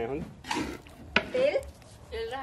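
Kitchen utensil on a metal cooking pan: a short scrape, then one sharp clink just after a second in, the loudest sound here.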